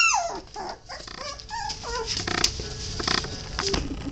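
Puppies play-fighting, squealing and whimpering: a high falling squeal right at the start, then a few short whiny squeaks about a second and a half in.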